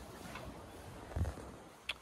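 Faint background hiss, with one soft low thump about a second in and a brief click near the end.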